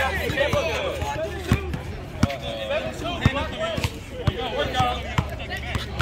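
Basketball dribbled on an outdoor hard court: a run of sharp bounces, unevenly spaced at about one or two a second, over the chatter of spectators' voices.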